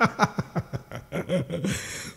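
A man chuckling: a run of short laughs that trails off near the end.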